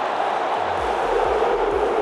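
Football stadium crowd cheering in a steady roar, with a low thudding beat of background music coming in underneath about a second in.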